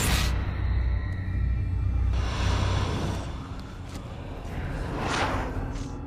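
Dark, scary trailer music: a deep rumbling drone opened by a sharp whoosh-hit, a swelling rush about two seconds in, and another whoosh rising near the end.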